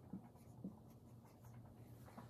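Faint strokes of a dry-erase marker writing on a whiteboard, with a couple of light ticks near the start, over a low steady room hum.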